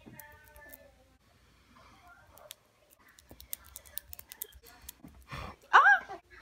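Tacky glue-stick glue being kneaded between fingertips and pulled apart: a scatter of faint, sticky clicks through the middle. A short, loud vocal exclamation comes near the end.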